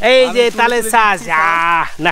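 A man's loud excited exclamation that ends in one long drawn-out cry held at a steady pitch.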